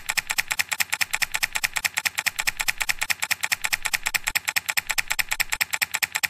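Rapid, even typing on a laptop keyboard, about ten keystrokes a second.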